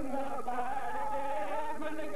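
Men's voices chanting together in long, slightly wavering held notes.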